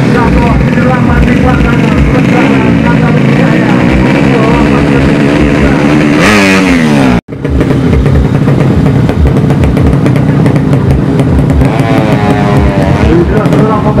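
Drag racing motorcycle engine revving hard and loud at the start line. The pitch swings up and down, with a fast falling sweep just before a brief break about seven seconds in.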